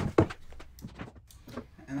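Cordless impact driver briefly driving a screw into plywood shelving right at the start, followed by a few faint clicks and knocks of handling.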